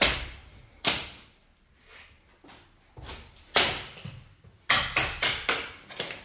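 Hammer and pry-bar blows knocking out interior wall finish during demolition. A sharp knock at the start, single knocks about a second in and past the middle, then a quick run of four knocks near the end, each ringing briefly in the empty room.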